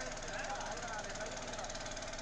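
Faint, indistinct voices over a steady background noise, the location sound of the fire-scene footage.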